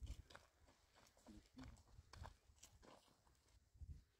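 Faint, irregular footsteps of two people walking over dry, plowed earth, under a low rumble.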